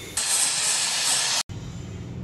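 Stovetop pressure cooker whistling: steam blasts out past the weight on the lid with a loud, steady hiss, spraying frothy lentil liquid. Each such whistle marks built-up pressure, and the cook counts three. The hiss cuts off suddenly about a second and a half in.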